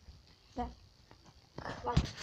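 Mostly speech: a short spoken word, a few faint handling knocks, then talking again near the end.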